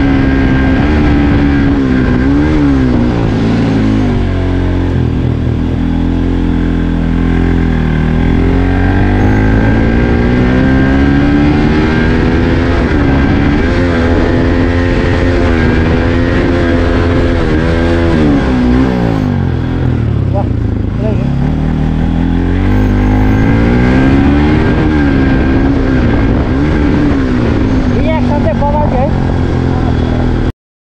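Bajaj Pulsar NS200's single-cylinder engine pulling under load on an uphill road, the revs rising and falling again and again every few seconds as the throttle is worked, with one deeper drop about two-thirds of the way through.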